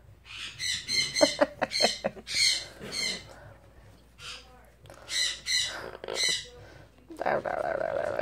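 Yellow-naped Amazon parrot giving a string of short, high squawks and chirps, with a few quick clicks among them early on.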